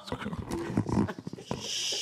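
Laughter: a choppy run of laughing, breaking off in a short breathy hiss near the end.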